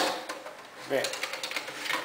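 Hot-swap drive tray of a QNAP TS-459 Pro NAS being unlatched and pulled out of its bay: a sharp click at the start, then a run of small clicks and rattles in the second half.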